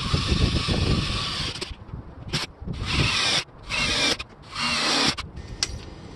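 Cordless drill boring through the van's sheet-metal roof. It drills steadily for about the first second and a half, then runs in four short bursts as the bit works through the metal.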